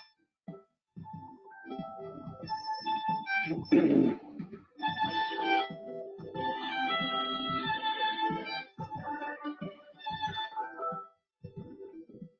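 Violin music played over a video call: held notes in phrases that cut out abruptly to silence several times, as the call's audio processing, which passes voice better than music, chops it. A loud low thud about four seconds in.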